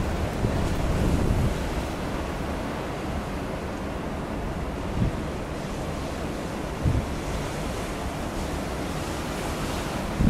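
Waves breaking and washing on a pebble storm beach, with wind buffeting the microphone. It is a little louder for the first second or so, then settles to a steady wash, with two brief low bumps about five and seven seconds in.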